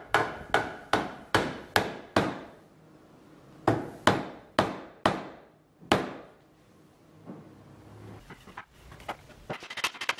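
Hammer blows on sapele hardwood: six sharp strikes at about two a second, a pause of a second and a half, then five more. Near the end comes a quick run of lighter taps.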